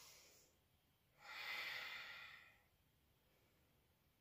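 A woman breathing slowly and faintly: one breath trails off at the start and another, about a second and a half long, comes about a second in.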